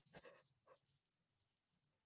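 Near silence on a video-call line, with only the faintest trace of sound in the first second.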